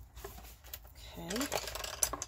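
A few light clicks and taps of small craft supplies being handled, with a brief spoken "okay" about a second in.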